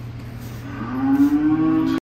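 Dairy cattle mooing: one long moo that starts a little under a second in, rises briefly in pitch, then holds steady until it cuts off suddenly, over a steady low hum.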